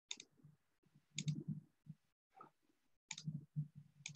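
Quiet clicks and taps on a computer keyboard and mouse, in several short bursts with pauses between them.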